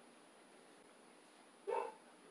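Quiet room tone, broken near the end by a single short, pitched yelp-like vocal sound lasting about a quarter of a second.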